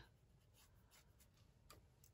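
Near silence with a few faint, soft strokes of a round watercolour brush on rough watercolour paper.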